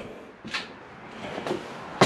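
Soft scuffs and rustles of movement, a couple of faint knocks, then a short, sharp hiss-like burst at the very end.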